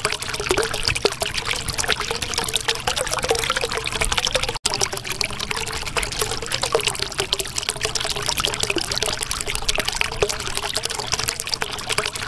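Water trickling and bubbling steadily, with many small rising bubble blips. The sound drops out for a split second just under five seconds in.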